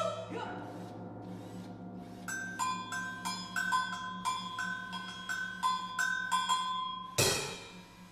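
Mallet percussion playing a repeated figure of two high ringing notes, about three strikes a second, over a steady low hum. Near the end, a sudden loud noisy burst cuts in and dies away.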